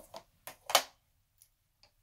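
A few sharp clicks and knocks of hard plastic stamping tools being handled on a tabletop, the loudest a single knock a little under a second in, followed by two faint ticks.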